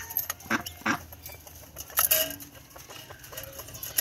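Domestic quail giving a few short, low calls, with light clicking and a sharp knock about halfway through.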